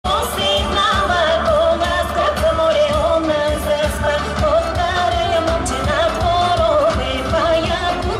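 Bulgarian folk dance music for a horo, played loud over loudspeakers: a steady beat under a quick, ornamented melody line, with singing.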